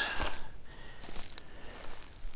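A short, breathy sniff close to the microphone at the start, followed by faint rustling and a few light ticks.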